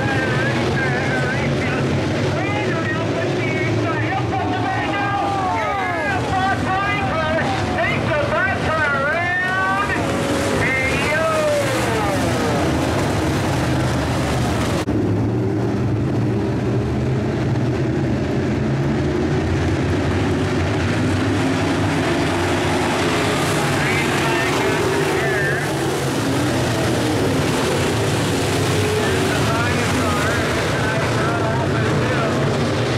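IMCA Modified dirt-track race cars racing, a pack of engines revving with pitches rising and falling as the cars pass. About halfway through the sound changes abruptly to a steadier engine drone.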